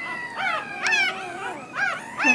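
A newborn Rottweiler puppy crying in several short, high-pitched squeals that rise and fall, as a needle goes into its front paw at the dewclaw. The cries show it is not yet deeply enough under the mask anaesthesia.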